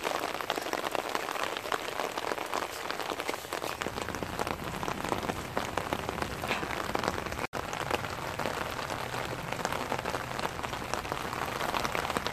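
Steady heavy rain falling on wet paving and into open tubs of water, with many separate drop hits. The sound cuts out for an instant a little past halfway.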